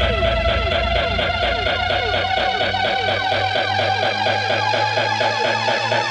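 Electronic dance music from a tech house / bass house DJ mix: held synth tones over a fast repeating pattern of short downward sweeps. The deep bass drops away about two seconds in while one synth tone slowly rises in pitch.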